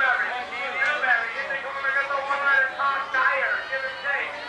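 Speech: a race announcer talking continuously over the public-address loudspeakers, words indistinct.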